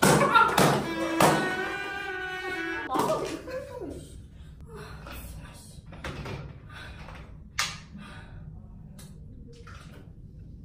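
Three quick whacks of a rolled-up tube on a man's head in the first second or so, followed by his long, held cry. After that there are only faint scattered clicks.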